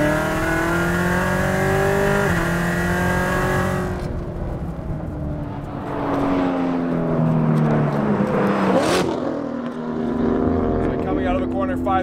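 Chevrolet C7 Corvette Stingray's 6.2-litre LT1 V8 under hard acceleration through its manual gearbox: the pitch climbs, drops at an upshift about two seconds in, and climbs again. After a few quieter seconds the engine note falls away steadily, ending in a brief rush of noise, then rises again near the end as a few words are spoken.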